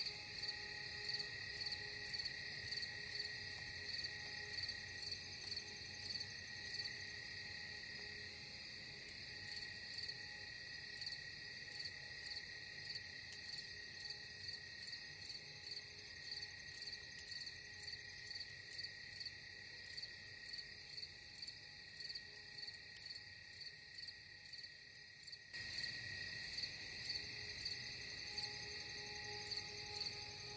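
Crickets chirping in a steady pulsing rhythm over faint, held ambient tones.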